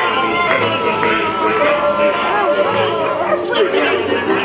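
Animatronic pirate band's show music playing a jaunty tune on accordion, mandolin and guitar, with pirate voices singing and calling over a steady bass beat.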